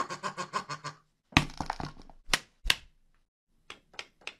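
A fast run of short rattling pulses for about a second, then three heavy thunks of a hard object knocked on a surface, the first the loudest.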